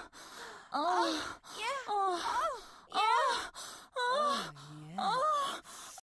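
A voice retching and vomiting: about six gagging heaves, each a short groan that bends in pitch, roughly one a second.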